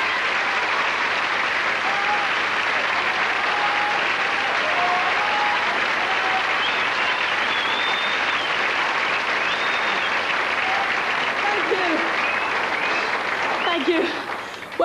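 Studio audience applauding steadily, with a few cheers and voices calling out over the clapping.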